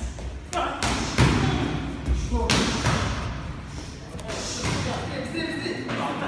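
Amateur boxers sparring in a ring: several thumps from gloved punches and footwork on the canvas, the loudest about a second in, with voices in the hall.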